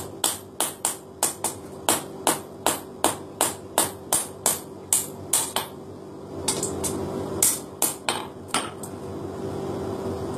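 Hammer blows in keris forging, struck at about three a second, with a short pause about six seconds in before a few more blows.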